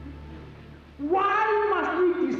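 A man's voice through a microphone and loudspeakers: one long, drawn-out shouted word starting about a second in, over a low electrical hum.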